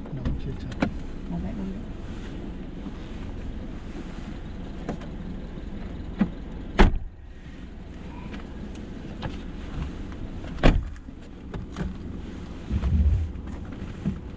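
Steady low rumble inside a stationary Mercedes-Benz car with its engine idling, broken by a few sharp knocks, the loudest about seven and eleven seconds in.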